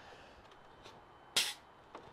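A faint tick, then a single short, sharp click about one and a half seconds in, from a compression tester being handled between cylinder readings. The background is otherwise quiet.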